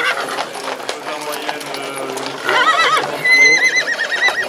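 Draft horses' hooves clattering on asphalt as a team is led along at a trot, with two wavering horse whinnies, one about two and a half seconds in and a longer one starting just after.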